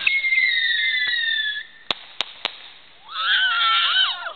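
Firework whistling for about a second and a half, its pitch falling slightly, then three sharp cracks in quick succession. People shriek near the end.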